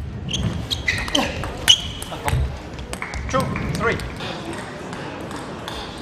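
Table tennis ball striking bats and the table in sharp, separate clicks, the loudest about a second and a half in, with voices in the hall between the strokes.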